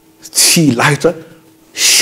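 A man speaking, in a studio-like room, with a short sharp hissing breath or sibilant near the end.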